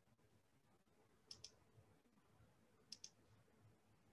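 Two faint computer mouse clicks, each a quick double tick, about a second and a half apart, over near silence.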